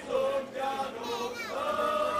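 A group of men singing a Slovak folk song together: a few short sung notes, then a long held note starting about three-quarters of the way in.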